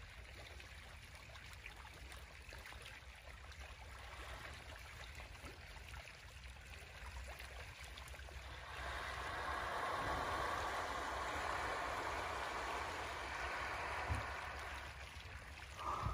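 Water lapping and trickling against the side of a small boat, swelling into a louder rush of water about nine seconds in, with a short knock near the end.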